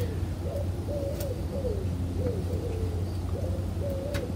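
A dove cooing over and over, a string of low wavering notes, over a steady low hum.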